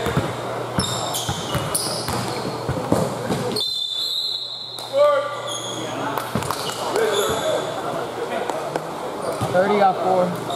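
Basketball being dribbled and sneakers squeaking on an indoor gym court, with players' voices calling out across the hall, loudest about five seconds in.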